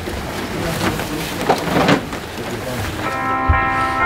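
Indistinct crowd voices and rustling noise, then about three seconds in music comes in with a steady held chord.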